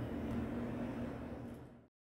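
Steady background room noise with a low, even hum, fading out to silence shortly before the end.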